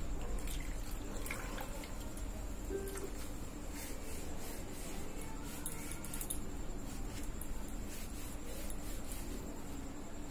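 Water splashing and dripping as a wet cloth is squeezed in a steel bowl, then scattered soft clicks and rubbing as the cloth is wiped along a vegetable stalk, with faint music behind.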